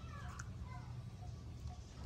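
A few short, high, squeaky animal calls that glide up and down in the first second, over a steady low hum and a faint chirp repeating about twice a second.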